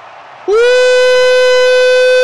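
A horn sounding one long, loud, steady note, starting about half a second in with a short upward scoop into the pitch.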